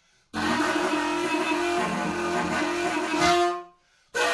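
Homemade PVC-pipe wind instrument with a metal neck and mouthpiece, blown in one long sustained note. The note starts about a third of a second in and fades out shortly before the end.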